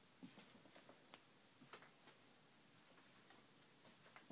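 Near silence in a quiet room, broken by a few faint, irregular clicks and soft taps.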